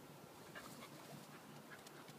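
Faint panting of a black Labrador retriever puppy: a few quick, soft breaths and ticks over near silence.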